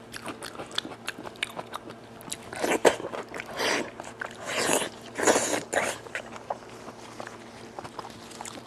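Close-miked wet eating sounds from a person eating goat head meat: steady chewing and lip smacks with many small clicks, and several louder sucking bursts in the middle as the meat is sucked from her fingers and the bone.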